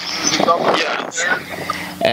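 Indistinct voice, muffled under a rushing hiss.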